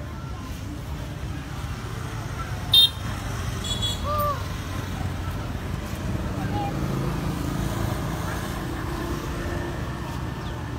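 Steady road traffic noise, with a brief loud high-pitched beep about three seconds in and a fainter one about a second later.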